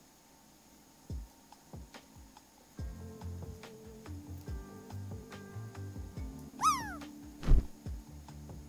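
A cat meows once near the end, a short call that rises briefly and then falls in pitch, and a thump follows just after it. Soft background music plays under it.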